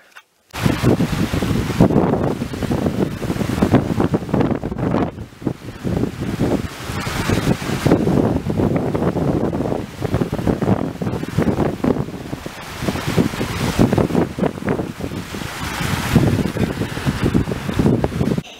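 Strong storm wind gusting across the camera microphone: a loud, ragged rumble that keeps rising and falling with the gusts, starting suddenly about half a second in.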